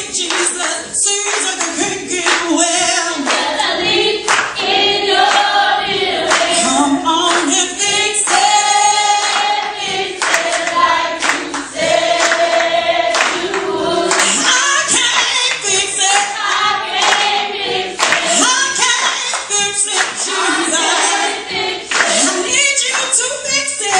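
Church congregation and choir singing a gospel song together, led by a man on a handheld microphone, with hand-clapping throughout.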